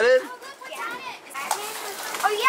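Young children's voices chattering and exclaiming, loudest at the very start, with a single light click about one and a half seconds in.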